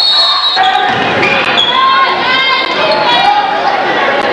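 A basketball bouncing on a hardwood gym floor during live play, with shouting voices from players and spectators in a large gym.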